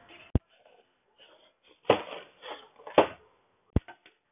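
A few sharp clicks and short rustling noises from someone moving about and handling things on a tiled floor, with quiet between them: one click just after the start, rustles about two and three seconds in, and another click near the end.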